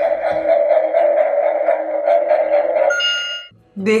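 Electronic lie-detector toy running its steady buzzing scan, which ends in a short high beep and cuts off suddenly, signalling the reading is done.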